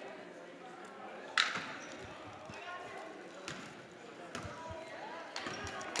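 Gymnasium ambience of crowd chatter, with a sharp knock about a second and a half in and then a basketball bouncing on the hardwood floor, the bounces coming closer together near the end.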